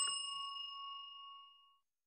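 A single bright ding from a notification-bell sound effect. It rings out with a bell-like tone and fades away over about a second and a half.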